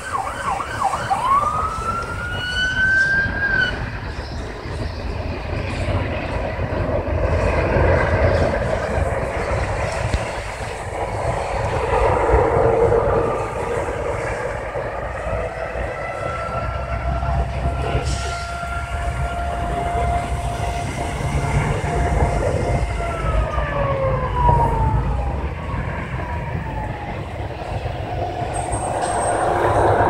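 Emergency vehicle sirens: a wail rising about a second in, then later a long steady tone that slides down in pitch near the end. A continuous low rumble runs underneath.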